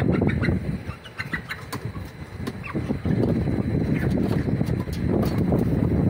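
A shed full of young broiler chickens peeping, with many short high calls scattered through.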